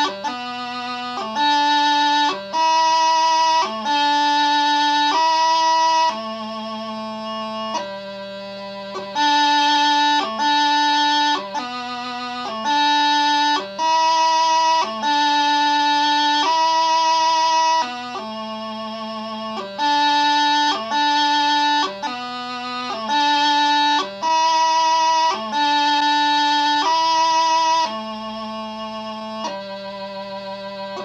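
Piobaireachd variation played on a Highland bagpipe practice chanter: a single melody line of held notes, each about a second long, separated by quick grace notes.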